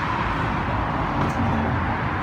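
Steady outdoor city background noise: a low rumble with an even hiss over it, with no distinct events.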